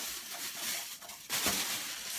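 Rustling and handling noise close to the microphone, with a louder swish about one and a half seconds in.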